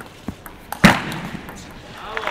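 Table tennis rally: a few light clicks of the celluloid ball off bats and table, then one loud smash a little under a second in, with crowd noise rising after it in the hall.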